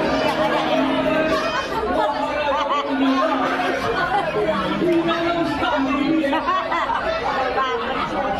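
Speech and chatter of several voices in a large hall, over a steady background of sustained music tones.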